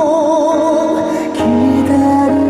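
Male singer's live voice holding a long note with wide vibrato over backing music, then starting the next sung line about a second and a half in, as a low bass comes in.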